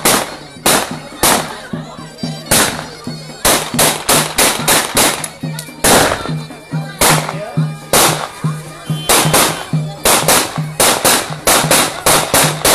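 Davul bass drum beaten hard in an uneven dance rhythm, about two to three strikes a second, with a zurna's reedy melody playing along: Turkish davul-zurna wedding music.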